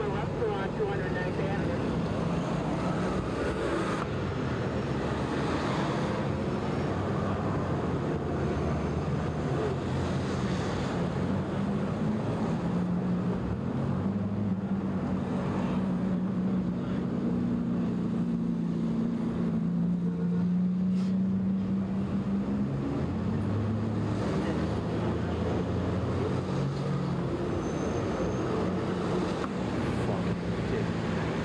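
Vehicle engines running in street traffic, a continuous rumble and hiss. A low engine hum grows stronger toward the middle and then eases off again.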